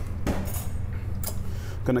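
Metal forks clinking a few times against a ceramic serving plate as slaw is lifted from it, over a steady low kitchen hum.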